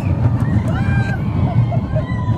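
Steady low rushing noise of a moving children's rollercoaster, wind on the microphone mixed with the ride's rumble. Faint high voices of riders come through about half a second to a second in.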